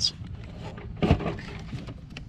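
Hands gripping and turning the plastic union nut on a spa heater tube, snugging it down by hand, with a sharp knock about a second in.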